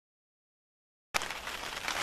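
Dead silence for about a second, then ambient background noise cuts in suddenly, with a click, as the recording starts.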